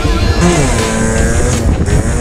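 Background music over a 50cc two-stroke moped engine running with an unrestricted exhaust, its pitch dropping about half a second in and then holding steady.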